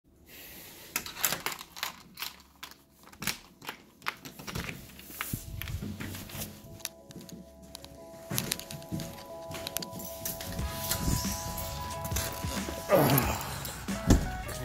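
Sharp knocks and footfalls in the first few seconds while someone moves through a house and down stairs, then music with long sustained tones comes in through the second half. A loud burst with a sliding pitch near the end is the loudest moment.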